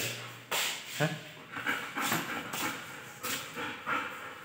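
A dog moving about on a laminate floor, making a string of short, irregular noises about every half second.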